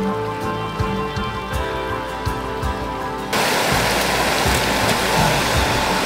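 Gentle background music with held tones for about the first three seconds, then a sudden cut to the steady rush of running water from a forest stream.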